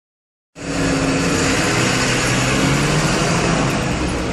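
A motor vehicle engine running close by, a loud steady noise with a low hum, starting about half a second in.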